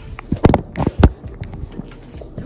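Handling noise: a few dull knocks and rustles as the hand-held phone is bumped and jostled, the loudest about half a second in and again about a second in.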